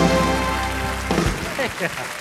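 A live studio band's held closing chord, on organ/keyboard and horns, ends about a second in, under a steady patter of audience applause. Brief laughing voices come in near the end.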